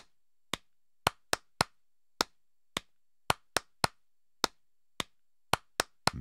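Recorded hand claps played back in a loop: about fifteen sharp single claps in an uneven, repeating rhythm, with silence between them.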